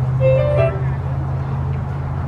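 Steady low background rumble, with a short pitched sound of a few notes about a quarter of a second in.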